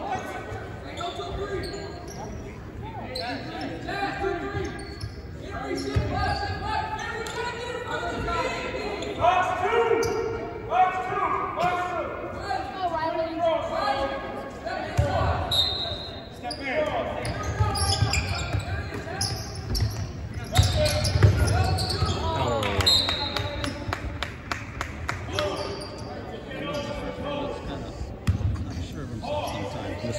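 A basketball bouncing on a hardwood gym floor, several dull thumps mostly in the middle of the stretch, with unclear talking voices echoing in a large gymnasium.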